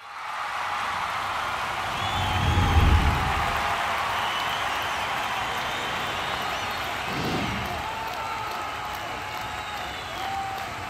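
Crowd cheering and applauding, with a few high whistles, and a deep low boom about three seconds in and a weaker one about seven seconds in.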